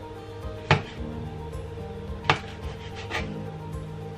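Kitchen knife slicing mushrooms on a chopping board: three sharp knocks of the blade striking the board, the first about a second in, over steady background music.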